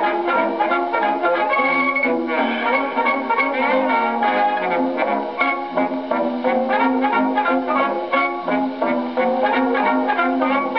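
A 1920 Victor acoustic 78 rpm record of a fox trot dance band played on a horn gramophone: brass and strings over a steady dance beat, the sound cut off above the high treble as old acoustic records are.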